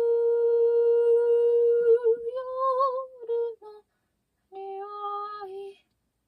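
A woman's voice holding long wordless notes: one steady note for about three seconds that wavers and lifts slightly before breaking off, then after about a second of silence a shorter, lower held note.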